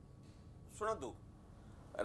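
Quiet studio room tone with one short spoken syllable from a voice a little under a second in, falling in pitch.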